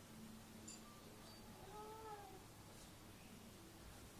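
Near silence with one faint cat meow about two seconds in, rising then falling in pitch, over a faint steady hum.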